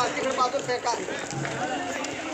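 Voices of people talking in the background, not clearly made out, over a low murmur.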